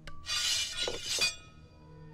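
Glass shattering under a blow from a rod: a sharp crack just after the start, then about a second of breaking glass, over soft background music.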